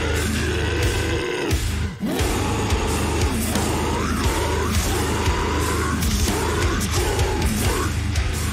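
Heavy metalcore music with very low, guttural screamed vocals over distorted guitars and drums, briefly cutting out about two seconds in.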